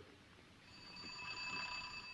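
A faint, steady bell-like ringing tone of several high pitches that fades in about half a second in and swells, then eases off.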